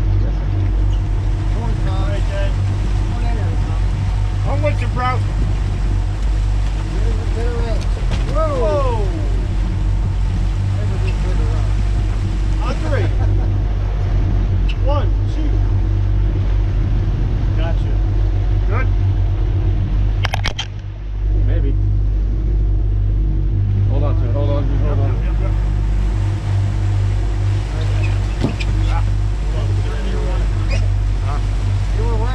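Twin outboard motors running steadily under way, a loud low drone with the rush of wind and water over it. Brief voices break through now and then, and there is a sharp knock about twenty seconds in.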